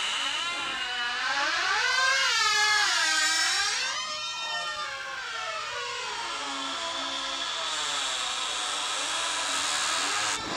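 Electronic sound effect: a sustained whooshing tone whose pitch sweeps slowly up and down in waves of about two seconds, settling and thinning near the end.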